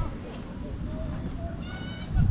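Faint voices of people out in the open over a low rumble, with a high-pitched call, like a child's voice, near the end.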